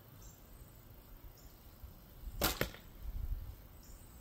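A bow shot with a thumb draw: the bowstring slips off a wooden thumb ring and snaps forward with a sharp double crack about two and a half seconds in, as the arrow is loosed. A low rumble follows for about a second.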